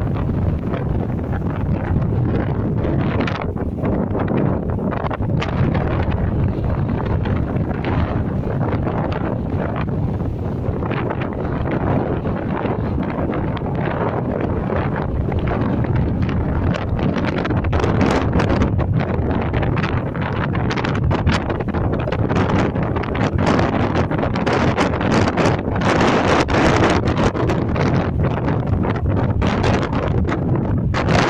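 Strong, gusty wind blowing across the microphone: a loud steady rumble with sharp buffeting crackles that come more often in the second half.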